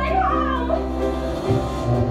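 Live band music with a woman singing, her voice sliding up and down in pitch within the first second over sustained accompaniment.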